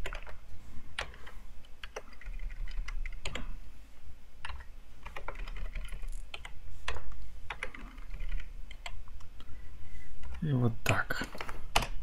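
Typing on a computer keyboard: separate key presses in short, irregular runs with brief pauses between them.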